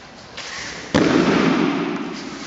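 A body hitting the foam mat in a breakfall during an aikido throw: a sharp slap about a second in, followed by about a second of rustling and sliding that fades out.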